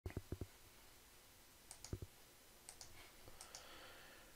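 Faint clicking over near silence: about a dozen small, sharp clicks in loose clusters, the strongest ones at the very start and around two seconds in.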